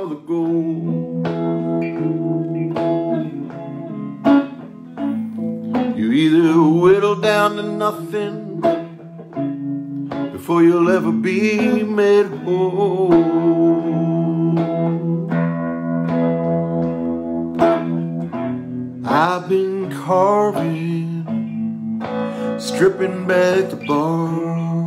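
Electric guitar playing a slow instrumental passage: picked notes and chords left to ring, with some notes bending up and down in pitch.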